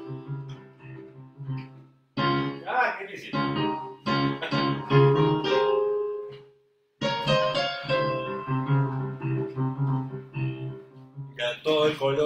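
Playback of a piano score from Finale notation software: a Spanish Phrygian (Phrygian dominant) melody with its major third, over a bass line, in this part repeated a third higher. Playback stops and starts again twice, about two seconds in and near seven seconds.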